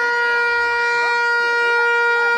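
A horn blown in one long, steady, loud note held for about two seconds.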